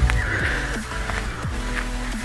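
Background music with steady held notes and a few short sounds that fall in pitch.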